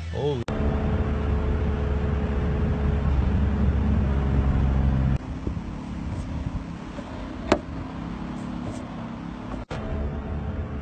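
A car engine runs with a steady low rumble for about five seconds, then stops abruptly. A quieter vehicle sound follows, with one sharp click about two seconds before the end.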